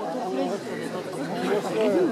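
Overlapping voices of a crowd of people talking and calling out at once.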